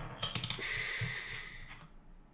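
A few quick clicks, like computer keys or a mouse, followed by about a second of soft breathy hiss.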